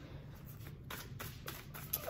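A deck of oracle cards being shuffled by hand: a quick run of soft, faint card-on-card flicks, mostly in the second half.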